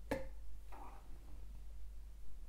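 A single short click just after the start, then faint room tone with a steady low hum.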